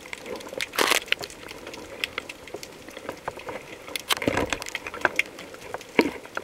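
Underwater crackle: a dense scatter of sharp clicks and pops, typical of snapping shrimp on a rocky seabed, with two short rushing bursts of bubble noise about a second in and about four seconds in.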